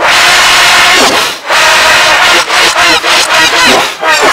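Loud yelling played backwards and layered with pitch-shifted copies, harsh and distorted. A noisy scream fills the first second and a half, then comes a brief dip and a stretch of wavering, pitched yelling.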